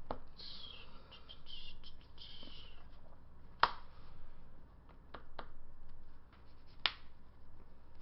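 Trading cards being handled and laid on a playmat: a soft sliding rustle over the first few seconds, then a few sharp taps of cards on the table, the loudest about three and a half seconds in.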